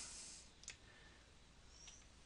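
Near silence with two faint computer mouse clicks, about a second apart.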